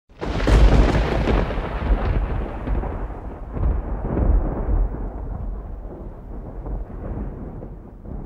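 Thunder: a sudden loud crack about a quarter second in, followed by a long rolling rumble that slowly fades, its crackle dying away before the low rumble.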